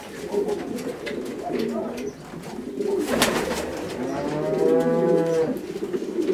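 Domestic fancy pigeons cooing in a loft: repeated low coos, with one longer, drawn-out coo in the second half. A brief sharp sound cuts in about halfway through.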